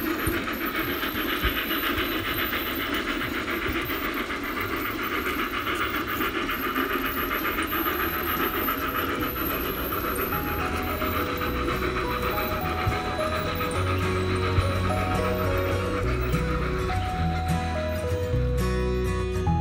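A large-scale garden model train running along its track, with a steady, dense clatter of wheels and rolling stock. Music notes fade in about two-thirds of the way through and grow louder toward the end.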